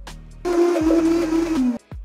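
Countertop blender running briefly on frozen blackberries and yogurt: a loud, whirring noise with a steady motor tone lasting just over a second, its pitch dropping as it stops.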